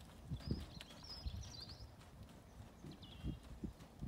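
Hoofbeats of a ridden grey horse on a loose gravel arena surface: dull, uneven thuds as it moves across the ring.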